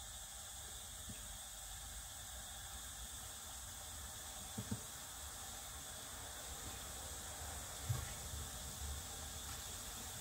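Strips of chiacchiere dough frying in hot sunflower oil in a pan: a faint, steady sizzle of bubbling oil, the bubbling a sign the oil is hot enough to fry. A couple of light knocks come about four and a half and eight seconds in.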